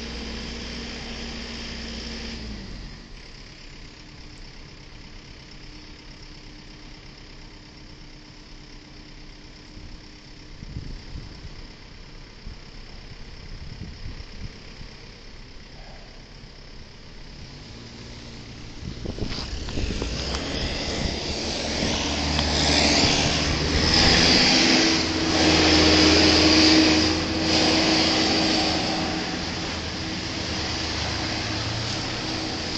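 Engines and road noise on a snowy street: a steady engine hum that drops away about two and a half seconds in, then, from about two thirds through, a vehicle approaching and passing close, loudest near the end, a steady engine tone over a rush of tyre and road noise. The close vehicle is a pickup truck fitted with a snowplow blade.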